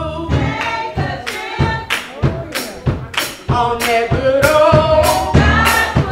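Gospel song: a woman's voice leads into a microphone with other voices singing along, over a steady percussive beat of about three strokes a second.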